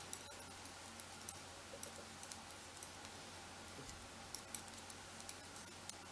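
Knitting needles clicking together faintly and irregularly as stitches are purled, a few light ticks a second.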